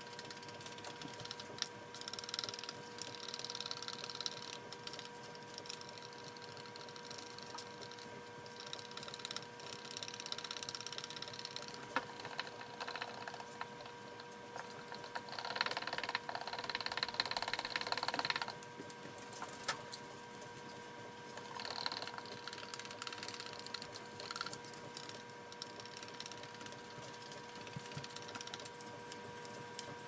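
Wooden stir stick scraping and clicking around the inside of a plastic cup in bouts of a few seconds, mixing two-part Famowood Glaze Coat epoxy resin. A faint steady hum runs underneath. Near the end a timer gives a quick run of short high beeps, signalling that the mixing time is up.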